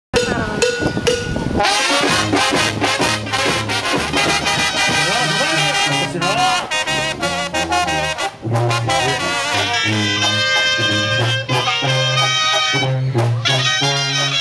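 A Mexican banda playing live: trombones and other brass over a tuba bass line, with a steady drum beat. The full band comes in after a short opening of about a second and a half.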